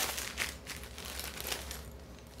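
Plastic snack packaging crinkling as it is rummaged out of a fabric packing cube: a run of small irregular rustles that thin out toward the end.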